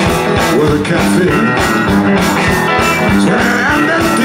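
Live blues band playing a steady groove: electric guitars over a drum-kit beat.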